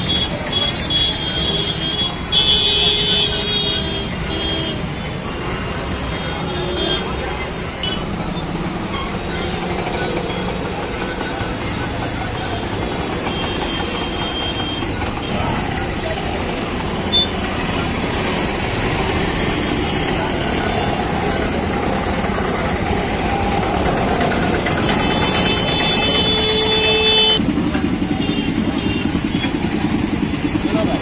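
Busy street traffic: auto-rickshaw, scooter and motorcycle engines running amid crowd chatter. Vehicle horns honk a few seconds in and again for about two seconds near the end.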